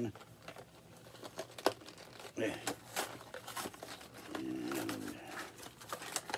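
Crinkling and rustling of packaging being handled and opened, with many short, sharp crackles scattered throughout.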